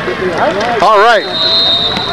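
Football crowd voices with a loud shout about a second in, then a long, steady referee's whistle blast that starts just after it, blowing the play dead.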